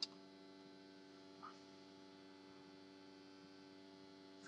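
Near silence: a faint steady electrical hum, with a single mouse click at the very start.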